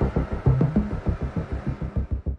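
Background music with a fast, even pulsing beat under low sustained bass notes.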